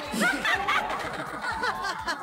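Several people chuckling and laughing at a joke, with bits of overlapping talk.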